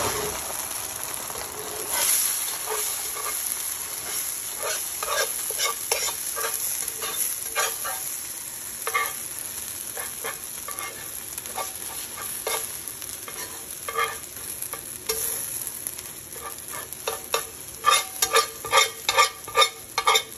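Eggs sizzling in a hot skillet while a wire whisk stirs and scrambles them, the whisk tapping and scraping on the pan at irregular intervals. The taps come thick and fast near the end.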